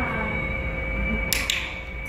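A handheld dog-training clicker sounding as a quick pair of sharp clicks about one and a half seconds in, marking the dog for leaving a treat alone in a 'leave it' exercise.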